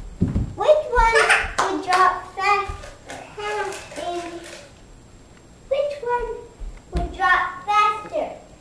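Young children's voices talking and calling out in short bursts, with a quieter pause past the middle. There are a couple of low thumps, one at the start and one about seven seconds in.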